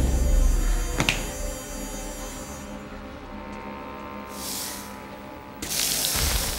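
Film sound effects over a low humming drone: a deep boom at the start, a sharp snap about a second in, then a short hissing swish and a louder one near the end.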